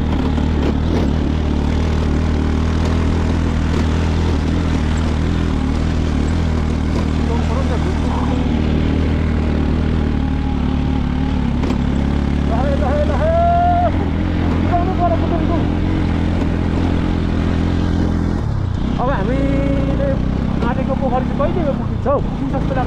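Motorcycle engine running at a steady speed, heard from on the bike itself. The engine note dips briefly about three-quarters of the way through, then picks up again.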